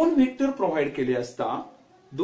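A man speaking, with short pauses between phrases.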